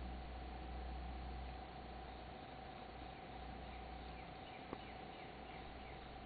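Faint quiet-woods ambience with a low rumble and a thin steady hum, broken once about three-quarters of the way through by a single short chirp from a lone bird.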